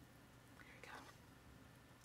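Near silence: room tone, with one faint, brief sound a little before the middle.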